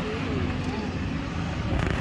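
Steady low rumble of a moving vehicle mixed with wind noise, with faint voices talking underneath.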